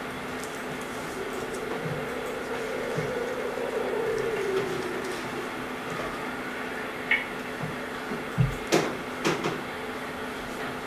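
A steady low hum, with a faint wavering tone in the first half. It is followed by a handful of sharp knocks and clicks in the last three seconds.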